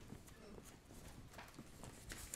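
Faint rustling and light taps of paper sheets being lifted and turned over by hand.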